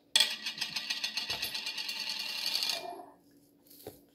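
Rapid metallic rattling from a small tea tin being shaken or handled, a dense run of fine ticks that starts suddenly and stops after about three seconds.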